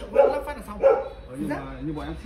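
A dog barking twice in quick succession, with men's voices talking low.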